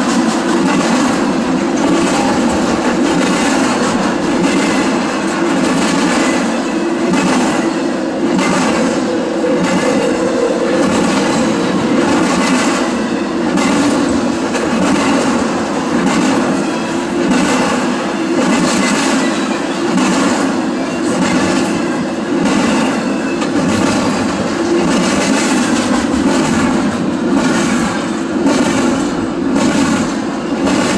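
Intermodal freight train cars rolling past close by at speed: a steady loud rumble of steel wheels on rail, with repeated clicks as the wheels pass over the track.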